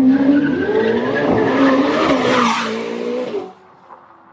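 Ferrari SF90's twin-turbo V8 accelerating hard, loud, its engine note climbing in pitch and dropping back at each upshift. It cuts off suddenly about three and a half seconds in.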